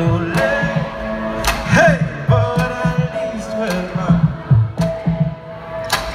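A live band playing an R&B-pop song through a festival PA, heard from the audience, with drum hits and a male lead vocal holding and bending sung notes.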